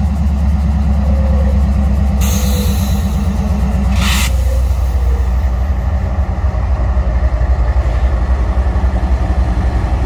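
Florida East Coast Railway GE ES44C4 diesel locomotives rolling slowly past, their engines running with a steady low rumble as the train slows to a stop. A hiss comes about two seconds in, and a shorter, sharper one about four seconds in.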